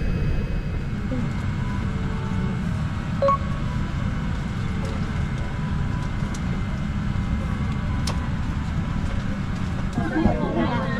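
Steady low rumble of cabin noise inside a Boeing 787-8 airliner taxiing to the gate, with a couple of faint clicks.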